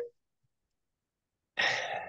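A man's word trails off. Dead silence follows for about a second and a half. Then comes an audible, breathy sigh as he gathers himself to speak again.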